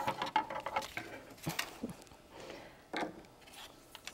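Fabric being handled and trimmed with scissors: soft rustling and a few light snips, the clearest about a second and a half in and again near three seconds in.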